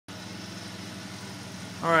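Steady low machine hum with a faint pitched drone; a man says "Alright" near the end.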